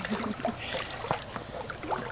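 Swimming-pool water sloshing and lapping as a man moves through it, with a faint brief voice near the start.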